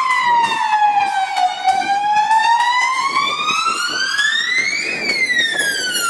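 Police car siren sounding a slow wail. The pitch dips, climbs steadily for about three seconds to a high peak, then falls again.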